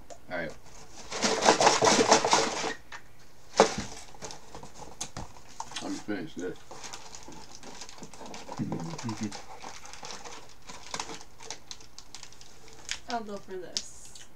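Hands rummaging through a cardboard box of snack packets, wrappers and cardboard rustling and crinkling, loudest in a burst about a second in, followed by a sharp click. Fainter rustling continues as the digging goes on.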